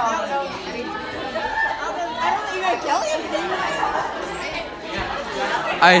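A group of people chatting at once, overlapping voices with no single clear speaker.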